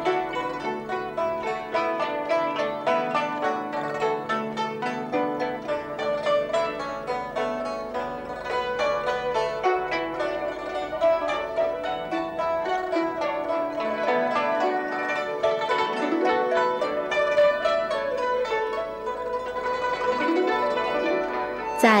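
Background music: a melody of quick plucked notes on a zither-like string instrument.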